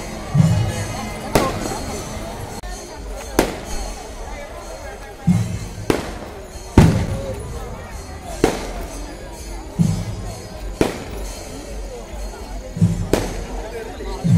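Firecrackers going off: about eight sharp bangs at uneven gaps of one to two seconds, the loudest near the middle. Music and voices carry on behind them.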